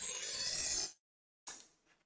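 Glitch-style intro sound effect: a burst of harsh static-like digital noise lasting about a second that cuts off suddenly, then a brief faint swish about a second and a half in.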